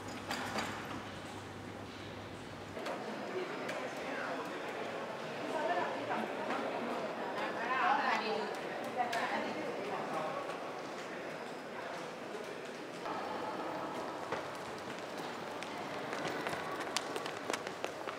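Indistinct chatter of many people talking at once in a large hall, with scattered sharp clicks near the end.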